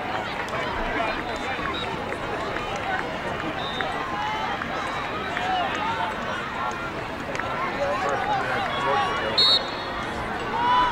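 Many voices calling and talking over one another across an outdoor lacrosse field, players and sideline mixed, with scattered light clicks. Near the end a short, sharp whistle blast stands out as the loudest sound.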